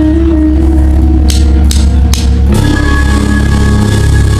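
Live rock band playing through the PA: a steady low drone and held notes, three sharp hits about a second and a half in, then new sustained notes come in about two and a half seconds in.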